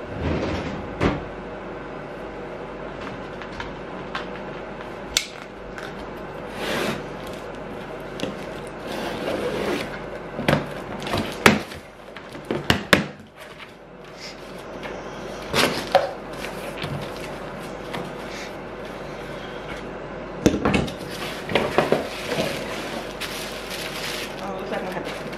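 A cardboard box being opened by hand: flaps pulled loose and handled, giving scattered rustles, scrapes and knocks that come thickest about halfway through and again near the end, over a faint steady hum.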